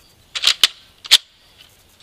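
Nerf Zombie Strike Fusefire blaster's plastic priming mechanism being worked by hand to chamber a disc: a few sharp plastic clicks and clacks, two about half a second in and the sharpest a little past a second in.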